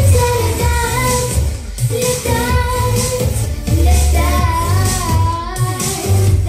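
A girl of about eight to ten singing a pop song into a handheld microphone over a backing track with a heavy, pulsing bass line.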